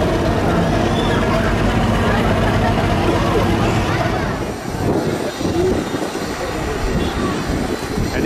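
Passenger ferry's diesel engine running with a steady low hum, with voices over it. About halfway through the sound changes abruptly to a rougher, more uneven rumble.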